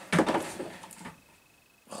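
A thin plastic RC monster-truck body being set down over the chassis: a short plastic rattle and crackle just after the start that dies away within about a second.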